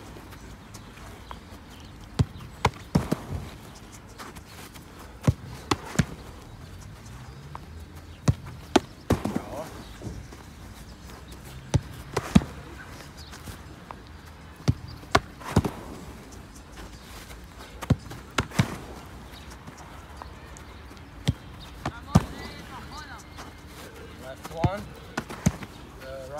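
A football being kicked and then caught or blocked by a diving goalkeeper: sharp thuds every few seconds, often in pairs about half a second apart.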